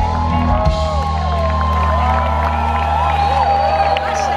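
Live band ending a song: a last beat, then a held low chord rings on under a crowd whooping and cheering.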